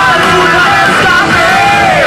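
Live rock band playing loud, with a singer yelling the vocal line over the band.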